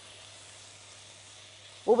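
Chopped onion frying in a little oil in a pan, a steady soft sizzle, as it is sautéed just until it turns pale yellow before the minced meat goes in.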